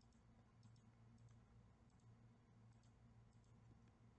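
Near silence: faint computer mouse clicks, about half a dozen spread unevenly, over a low steady hum.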